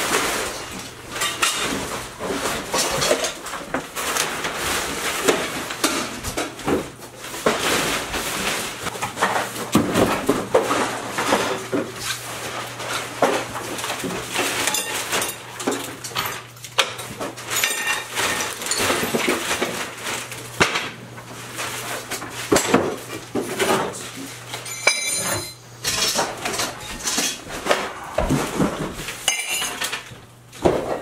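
Household clutter being cleared by hand into trash bags: continuous irregular clattering, with dishes and glassware clinking and frequent knocks, over a faint steady low hum.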